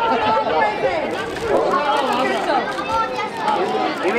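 Crowd chatter: many people talking at once in overlapping voices, steady throughout.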